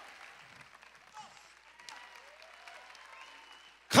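Faint applause from a church congregation during a pause in the sermon, with a couple of voices calling out in the crowd.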